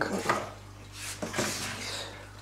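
A few light knocks and a short rustle as a magnetic aquarium glass cleaner is put away in the shelf cabinet under the tank.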